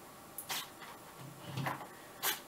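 Faint clicks and handling rustle as a LiPo battery lead is plugged into an RC plane's power circuit, the clearest click about half a second in.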